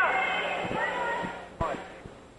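A basketball bouncing on the court floor three times, under fading background voices in the gym.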